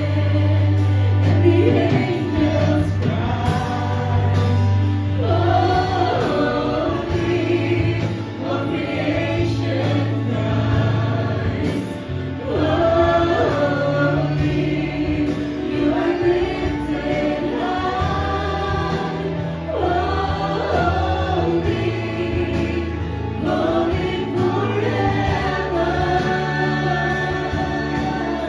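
A live worship band playing a Christian worship song: several male and female vocalists singing together in sung phrases over amplified band backing with electric guitar and sustained bass notes.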